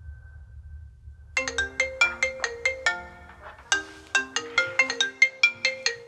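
Mobile phone ringtone: a quick melody of short, bright notes that starts about a second in, breaks briefly around the middle, then plays again. Before it there is only a low hum.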